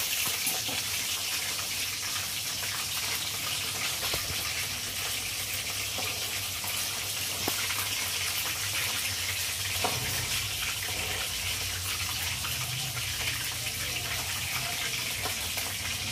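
Chicken pieces deep-frying in hot oil in a metal wok, a steady sizzle, with a few light knocks of the stirring spoon against the pan.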